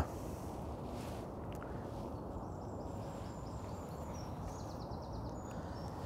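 Steady, low outdoor background noise with a dull rumble and no distinct events.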